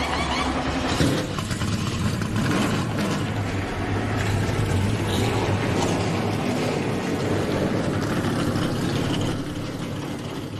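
Race car engine running loud and steady at high revs, with a sharp hit about a second in.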